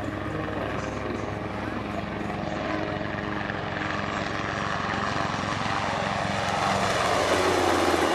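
Sikorsky UH-60 Black Hawk helicopter flying past low overhead: steady rotor blade chop with turbine noise, growing louder near the end as it passes side-on.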